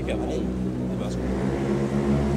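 A steady low engine drone, with a few spoken words at the start.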